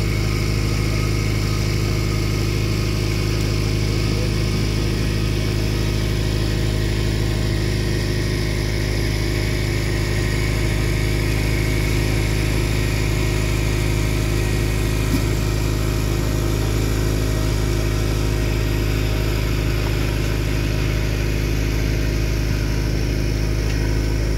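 A boat's engine running steadily at low trolling speed, an even drone that holds one pitch throughout, with a hiss of water and wind over it.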